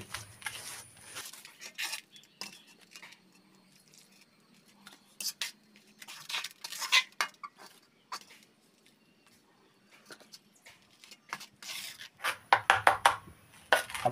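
Intermittent scrapes and clinks of a tool and hand against a shallow metal pan as cement mortar is mixed with water, in scattered clusters with quiet gaps between.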